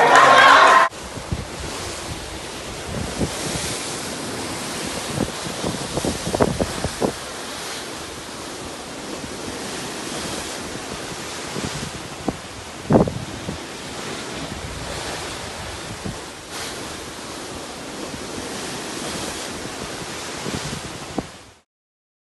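Wind blowing on the microphone over the open sea's waves, a steady rush with a few low buffeting thumps, the strongest about 13 seconds in. It cuts off just before the end. At the very start, a second of music with singing cuts off abruptly.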